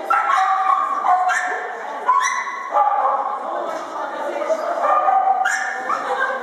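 A small dog barking and yipping repeatedly, in short excited calls during an agility run.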